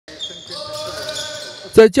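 Basketball practice on an indoor court: a ball bouncing and drawn-out high squeaks from players' shoes on the floor.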